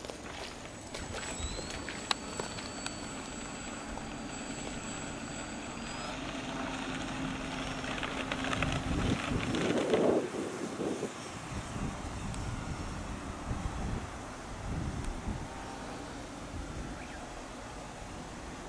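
Radio-controlled floatplane's motor and propeller running at takeoff power as it runs across the water and lifts off. It grows louder to a peak about ten seconds in, then fades as the plane climbs away.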